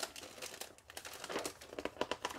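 Plastic bags holding model-kit parts runners crinkling, with paper rustling as the instruction booklet is lifted out and opened: an irregular run of small crackles.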